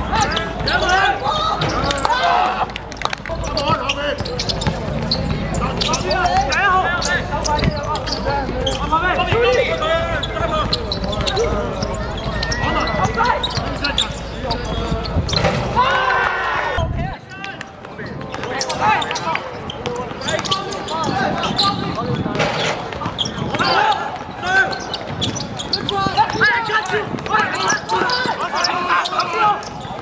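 Basketball game: a ball bouncing on the hard court with sharp knocks throughout, among players' and onlookers' shouts and talk. A low rumble underneath cuts off suddenly about halfway through.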